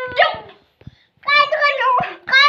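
A toddler's high-pitched angry shouts: a short one at the start, then after a brief pause a longer one that runs into the next shouts.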